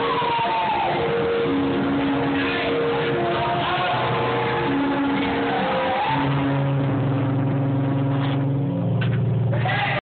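Live band playing loud: held keyboard notes under a lead line that glides up and down, with a low held note coming in about six seconds in.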